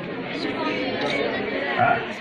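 Indistinct chatter of several people talking in a room, with a man's voice through a microphone starting again near the end.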